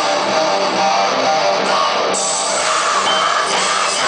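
Post-hardcore rock band playing live at full volume, with electric guitars holding sustained chords and notes over the band.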